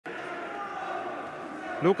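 Steady background din with faint sustained tones, then a man starts speaking about 1.8 seconds in.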